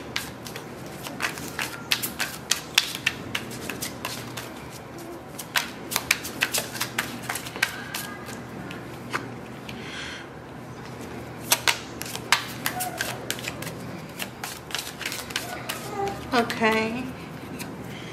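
A tarot deck shuffled by hand, making a quick, irregular run of sharp card clicks and snaps with short pauses.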